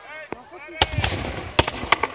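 Black-powder musket shots fired with blanks by Napoleonic reenactors. A faint crack comes first, then three loud, sharp shots, one a little under a second in and two close together near the end, with crowd chatter between them.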